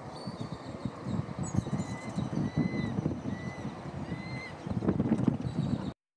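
Irregular low rumbling and buffeting noise with knocks, with a bird's short, rising whistled note repeated about four times faintly behind it.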